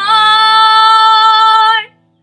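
A young girl's voice singing one long held note, steady in pitch, over a quietly ringing Taylor acoustic guitar chord. The voice stops shortly before the end, leaving the guitar fading.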